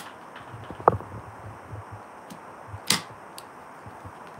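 Handling noises as a black briefcase is brought out and set down: a sharp click at the start, a short squeak just under a second in, another sharp click about three seconds in, and light knocks in between.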